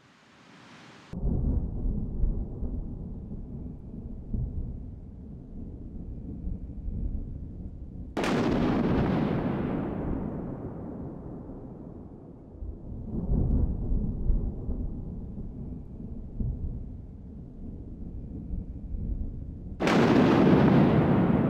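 A series of deep booms, each starting suddenly and rolling off in a long rumble over several seconds. The first comes about a second in, the next two around the middle, and a fourth at the very end.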